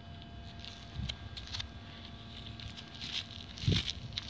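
Gloved fingers scraping and poking through wet, clumped soil to pick out a coin: soft scuffs and rustles, with a louder thump just before the end.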